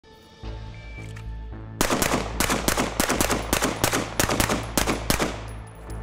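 A shot timer's short beep about a second in, then a Glock 17 9mm pistol firing a fast string of about sixteen shots in pairs over roughly four seconds.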